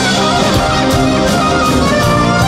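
A rock band playing an instrumental passage live: drums, bass, guitars and keyboards under a gliding lead melody, with steady drum strokes.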